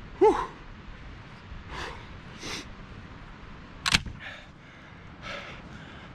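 A short "whew", then several brief puffs of breath blown into cupped hands to warm cold fingers. A single sharp click comes about four seconds in.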